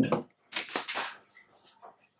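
Thin clear plastic protective film crinkling in a short rustle as it comes off the speaker and is set aside, followed by a few faint light taps.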